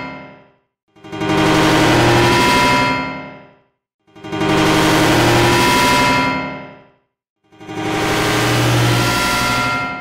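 A short theme jingle stacked as thousands of overlapping copies sounding at once, making a dense, clashing wall of sound. It comes three times, about three seconds apart, each time swelling in and fading out, with short silent gaps between. The previous repeat fades out just after the start.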